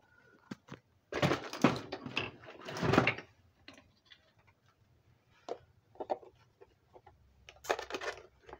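Handling noise from a phone camera being moved around: two loud rustling bursts in the first few seconds, then scattered light clicks and knocks.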